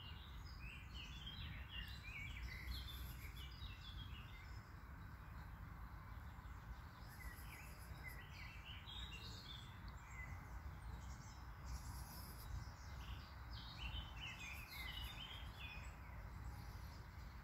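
A songbird singing three phrases, each a run of short notes stepping down in pitch and lasting two to three seconds, over a steady low outdoor rumble.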